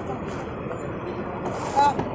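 Steady road-traffic noise with a city bus close by, and a brief voice near the end.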